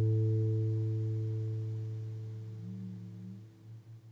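A last acoustic guitar chord ringing out and fading slowly away, with a soft low note sounding briefly near the end as it dies.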